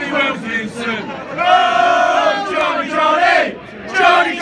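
Football supporters chanting together in unison, with a long drawn-out note about midway through.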